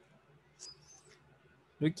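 A brief, faint high squeak about half a second in, over quiet room tone, then a man's voice begins near the end.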